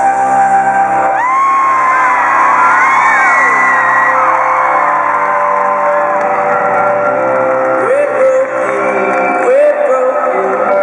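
Live band music in a large arena hall, with steady sustained keyboard chords. The crowd whoops and screams over it, most strongly in the first few seconds and again near the end.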